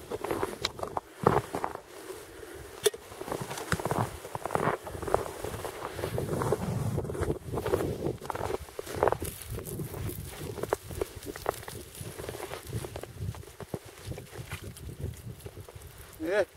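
Boots walking through snow: an irregular series of footsteps.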